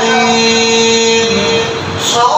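An imam's chanted Quran recitation: a man's voice holds one long steady note for over a second, then dips in pitch and fades near the end.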